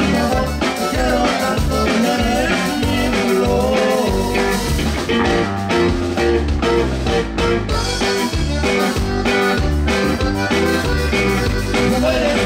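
Live conjunto music in an instrumental passage: a diatonic button accordion plays a quick melody over a bajo sexto strumming chords and a drum kit keeping the beat.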